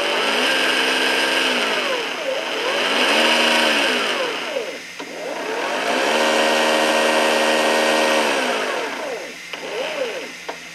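Smoke-unit fan motor in a 1/6 scale Armortek Tiger I hull whining up and down with the throttle, blowing smoke out of the exhaust stacks. It spins up and winds down three times, held longest the third time, over a steady rush of air.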